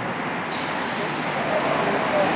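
Street sound of an Isuzu city midibus running at a stop: a steady diesel and traffic noise. A higher hiss joins about half a second in.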